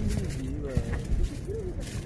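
Strong, unforecast wind gusting against a backpacking dome tent: a continuous low rumble with the fabric rustling and flapping.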